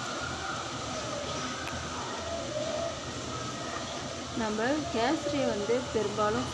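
A steady rushing noise with a faint hum, even and unchanging. About four seconds in, a woman's voice starts speaking.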